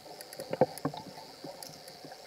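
Underwater ambience picked up by a dive camera in its housing: a faint steady hiss with scattered sharp clicks and pops, the loudest a little over half a second in.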